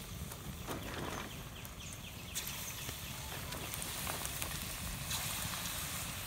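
Cabbage pakora batter sizzling in hot oil in a steel kadai, a steady hiss with small crackling pops that grows louder as more portions of batter go in, about two and a half seconds in and again about five seconds in.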